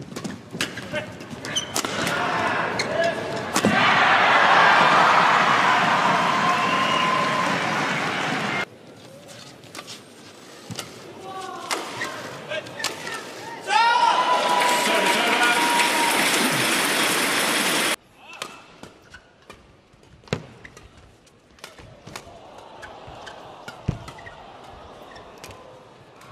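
Badminton rallies: a quick series of sharp racket strikes on the shuttlecock. Twice a crowd cheers loudly after a point, and the cheering cuts off suddenly each time.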